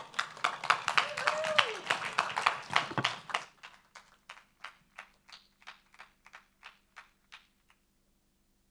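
Applause at the close of a talk: a dense burst of clapping for about three and a half seconds, then thinning to scattered single claps that die away.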